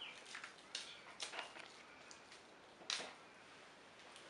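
Fresh basil leaves being torn by hand: faint rustling with a few soft, short crackles, the sharpest a little before the end.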